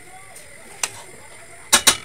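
A few sharp clicks: a single one a little under a second in, then a louder quick double click near the end.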